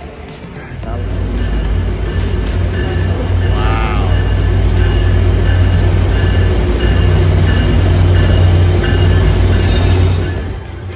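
A diesel Tri-Rail commuter train pulling into the station, its loud low rumble building over the first couple of seconds and then holding steady. A short rising-and-falling squeal comes about four seconds in.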